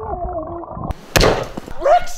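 A man's yell muffled underwater, dull with its high end cut off, followed about a second in by a sudden loud rush of noise, and a man's shout near the end.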